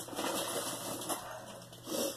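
Rustling and handling noise from packaging being moved about, an irregular, uneven rustle.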